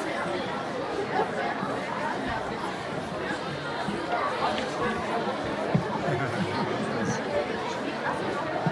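Many voices chattering at once in a large room, with no music playing. One brief knock stands out a little past the middle.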